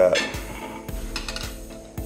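Background music with a steady bed of tones, over which a ceramic plate and metal fork give a few light clinks as the plate is handled and lifted.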